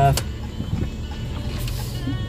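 Cabin noise of a moving passenger car: a steady low rumble of engine and road.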